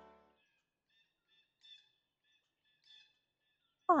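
The last sustained piano chord of an intro tune fading out, then near silence broken by two faint, short bird chirps about a second apart.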